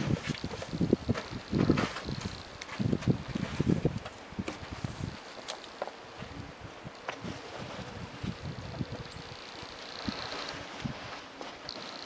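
Snow being brushed and pushed off a car by gloved hands, with footsteps in snow: irregular rustling and soft thumps, heavier in the first few seconds and sparser after.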